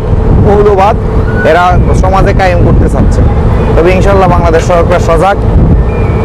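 A man talking, with short pauses, over the steady low drone of a river vessel's engine.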